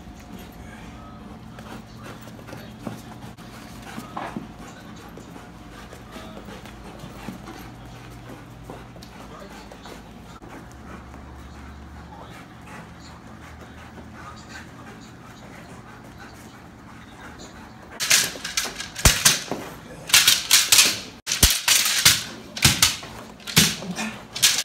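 A Belgian Malinois barking: a rapid run of loud, sharp barks over the last several seconds, after a long quiet stretch of faint panting over a low steady hum.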